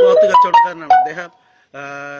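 Mobile phone ringtone playing a short melody of clear stepped notes, with a man's voice over it, then one held note near the end.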